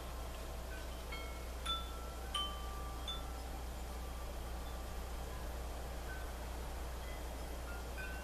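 Wind chimes ringing a few scattered, clear single notes, most of them in the first three seconds and one or two later, over a steady low hum.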